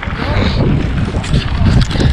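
Wind buffeting the microphone of a handlebar-mounted camera on a mountain bike riding a rough dirt track, a loud low rumble broken by many short knocks and rattles from the bumps.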